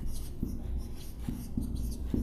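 Dry-erase marker writing on a whiteboard: a run of short, irregular pen strokes with faint squeaks as the letters are formed.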